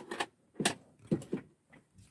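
A few short rustles and knocks from a paper magazine being handled.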